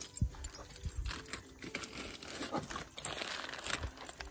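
Plastic mailer bag crinkling and rustling as it is handled, with a few scattered light knocks.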